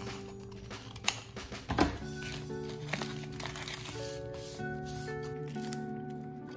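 Background music with steady notes, over which scissors snip through a paper envelope: two sharp snips about a second and nearly two seconds in, then a smaller click and paper rustling as the paper insert is drawn out.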